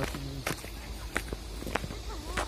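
Footsteps on a grassy dirt slope: several separate footfalls about half a second apart.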